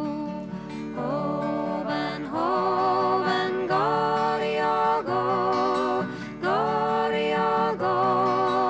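A woman singing a slow traditional Scottish folk lullaby in long, held notes that slide up into pitch, over a soft instrumental accompaniment.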